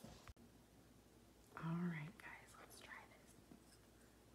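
A woman's voice, soft and brief, in a short murmured phrase about halfway through, over quiet room tone.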